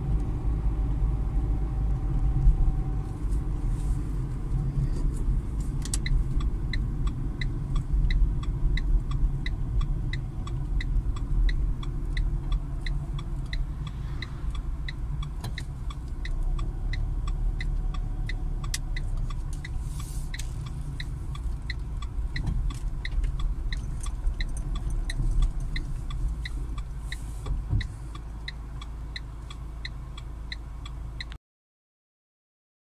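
Car interior rumble of the engine and tyres on the road, growing quieter near the end as the car slows. From about six seconds in, the turn-signal indicator ticks steadily at about two ticks a second.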